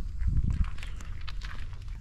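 Footsteps with scattered light knocks and clicks, and low thumps of a handheld camera being moved, as someone climbs into a boat sitting on its trailer.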